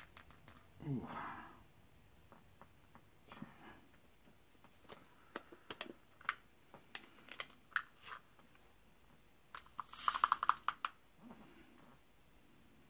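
Light, irregular clicks of square resin diamond-painting drills being tapped down onto the adhesive canvas with an applicator pen, with a short quick rattle of clicks near the end.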